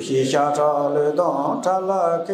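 A man's voice chanting Tibetan verses in a melodic liturgical recitation, rising in again right after a brief breath pause.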